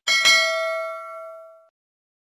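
A single bell-like 'ding' chime sound effect, of the kind used for a notification-bell or subscribe animation. It is struck once just after the start and rings out with a clear tone that fades away within about a second and a half.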